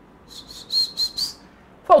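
Felt-tip marker squeaking on a whiteboard as an arrow is drawn: a few short, high squeaks in quick succession lasting about a second.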